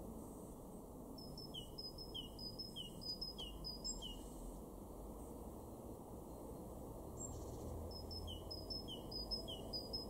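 Great tit singing: two phrases of its two-note song, a high note followed by a lower one, repeated about five times at roughly two pairs a second. The first phrase starts about a second in and the second near the end.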